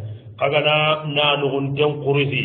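A man's voice in a chant-like, intoned delivery, starting after a brief pause at the start. It sounds like recitation of Arabic religious text.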